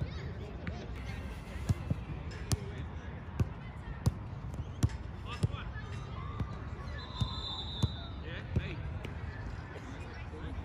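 Soccer balls being kicked on a grass pitch: about ten sharp thuds, less than a second apart, over background voices.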